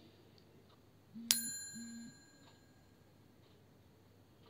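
A notification-style sound effect: a sharp click about a second in, then a bright bell ding that rings out and fades over about a second, with two short low hums around it. It matches the on-screen subscribe-button-and-bell animation.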